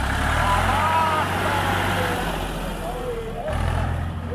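Vintage Ford tractor engine pulling away under throttle from a standing start. Its low note drops about two seconds in and rises again near the end.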